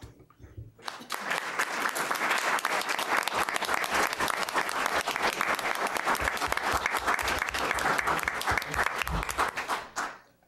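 A roomful of people applauding, starting about a second in and continuing at a steady level.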